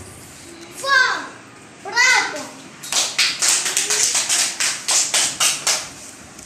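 Two short, high-pitched children's calls, then about three seconds of hands clapping in a steady rhythm, about four to five claps a second.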